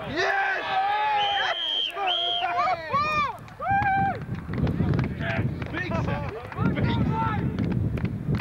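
Several men shouting and calling out on the field as a play ends, voices overlapping, with high, strained yells about three to four seconds in.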